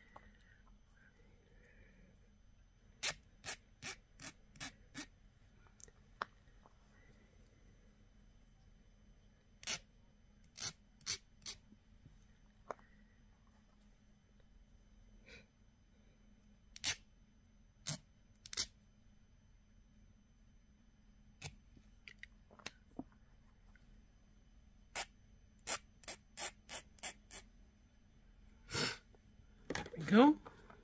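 Scattered short, sharp clicks and taps of small stamped metal pieces and a metal file being handled and set down, some in quick clusters of several clicks, against a faint hiss.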